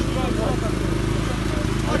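A steady low engine hum runs continuously, with overlapping voices of a crowd of people talking around it.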